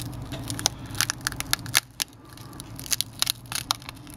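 Shattered Samsung Galaxy S5 screen assembly being peeled up off its frame, giving a string of small, irregular crackles and ticks as the heat-softened adhesive and cracked glass let go.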